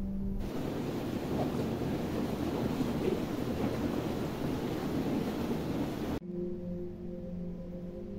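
Indoor jacuzzi's jets churning the water in a steady rush of bubbling. It cuts off abruptly about six seconds in, and a few soft, sustained tones of ambient relaxation music take over.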